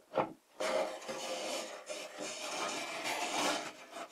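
Baltic birch plywood rubbing and scraping against wood in a rough, uneven rasp, starting about half a second in and stopping shortly before the end, after a brief scrape at the very start.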